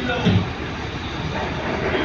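A steady rumbling background noise with people's voices over it, including a short loud low-pitched voice sound about a quarter of a second in.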